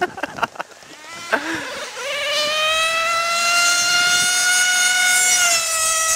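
Drag-modified OS .28 two-stroke nitro engine in a radio-controlled car at full throttle: a loud, high-pitched whine that starts about two seconds in, climbs slightly in pitch as it holds, then drops and fades near the end.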